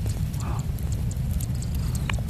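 Low, steady rumbling of wind buffeting the microphone, with a few faint clicks from the leaves being handled.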